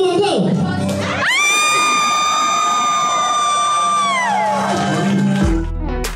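A long, high-pitched scream into a microphone on a counted "Go!", held steady for about three seconds and falling away at the end, with a crowd cheering and shouting just before it. Music with a deep bass comes in near the end.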